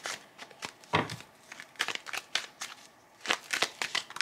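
Tarot cards being shuffled and handled: a run of irregular soft snaps and flicks of card stock, the loudest about a second in.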